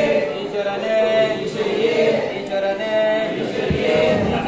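A group of Ayyappa devotees chanting together in unison: a sung refrain with long held notes, the phrase repeating about once a second.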